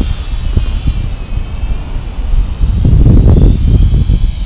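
Small quadcopter's electric motors and propellers whining faintly at a distance, the pitch wavering slightly as it is steered, under a heavy low rumble.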